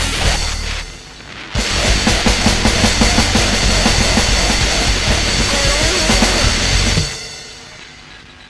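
Powerviolence band playing fast and loud, with distorted guitar over rapid drumming. The music dips briefly about a second in, comes back at full force, and stops near the end, leaving a fading ring as the song ends.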